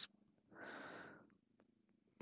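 Near silence, with one soft breath of under a second about half a second in.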